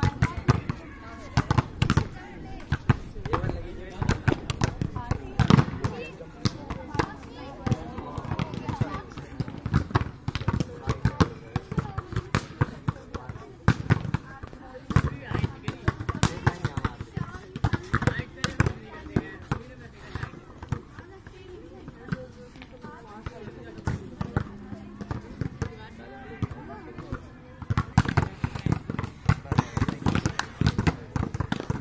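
Volleyballs being hit and bouncing on the ground: repeated sharp smacks and thuds, several a second at times, with people talking.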